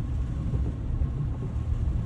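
Steady low rumble of a truck driving on a wet road, heard from inside the cab.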